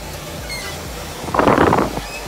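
A brief, loud rush of noise on the microphone, about half a second long, a little past the middle.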